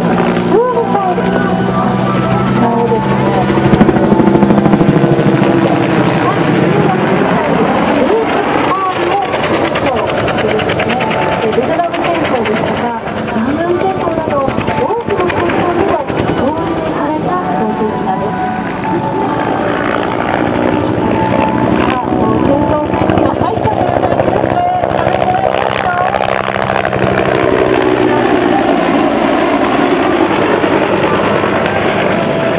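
Bell AH-1S Cobra attack helicopter flying aerobatic manoeuvres overhead: its single turboshaft engine and two-blade main rotor run loud and steady. The pitch glides up and down as the helicopter banks, climbs and passes.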